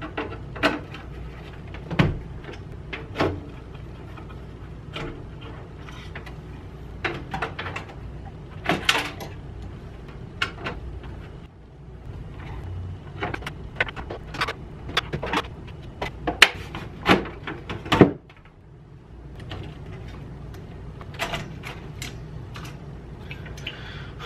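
Irregular clicks, knocks and rattles of a desktop computer being dismantled by hand: cables unplugged and components pulled from the metal case. A low steady hum runs underneath.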